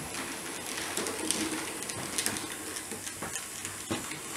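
Small electric motor of an H0-scale Roco BR 212 model diesel locomotive running as it moves slowly along the layout, with irregular clicks from its wheels on the track.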